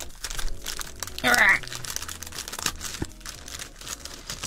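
Clear plastic bags crinkling and rustling as hands handle bagged merchandise, a steady run of small irregular crackles. A short high-pitched vocal sound comes a little over a second in.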